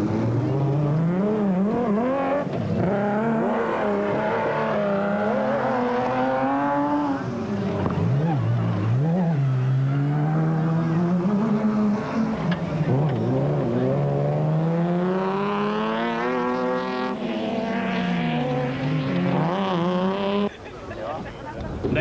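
Off-road race trucks' engines revving as a line of vehicles drives past one after another, the pitch climbing and falling again and again as they work through the gears. The sound drops suddenly near the end.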